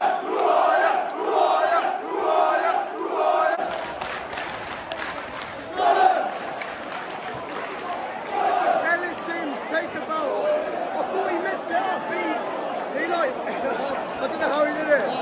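Football crowd chanting in unison to celebrate a goal, with a steady beat of repeated shouts for the first few seconds. After that it turns into a looser mix of crowd singing and nearby shouting voices.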